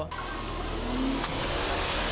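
A police SUV driving past close by, its engine and tyre noise building over the first second and a half.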